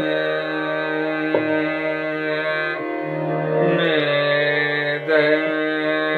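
Male Hindustani classical vocalist singing a slow khayal phrase in Raag Bihag, with long held notes, glides and wavering ornaments, over a steady drone. The voice drops away briefly a little before the middle and comes back in with gliding phrases.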